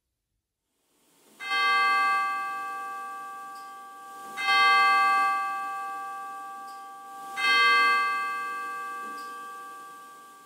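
A bell struck three times, evenly about three seconds apart, the first stroke about a second and a half in; each stroke rings out clearly with several tones and fades slowly.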